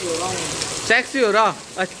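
Heavy rain pouring down, a steady hiss throughout, with a man's voice speaking over it.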